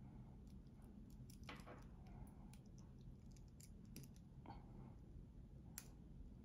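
Faint, irregular small clicks of a steel watch bracelet's end link and spring bar being worked into the lugs of the watch case by hand, over a low steady room hum.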